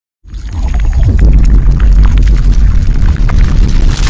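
Logo-intro sound effect: a loud, deep rumble with scattered crackles, starting a moment in and building toward the logo reveal.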